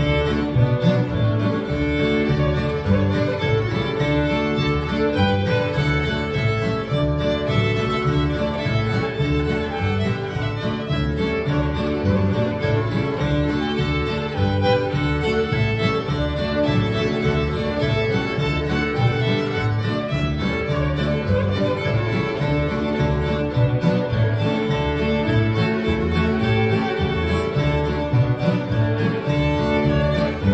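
A fiddle playing a tune, backed by strummed acoustic guitars and an upright bass keeping a steady beat.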